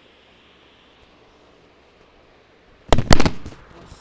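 Phone knocked over or dropped while recording: a brief cluster of loud clattering knocks close to the microphone about three seconds in, after near-quiet room tone.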